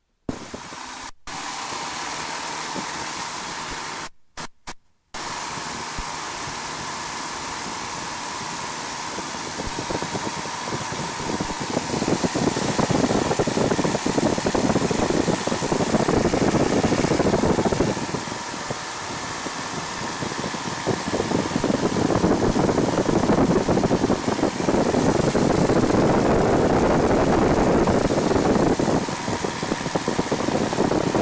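A 1940 Piper J-3 Cub's 65 hp Continental A65 four-cylinder air-cooled engine and propeller running at takeoff power, heard from inside the open cockpit with wind noise, through the takeoff roll on grass and the climb-out. The sound drops out briefly a few times near the start and grows louder about ten seconds in.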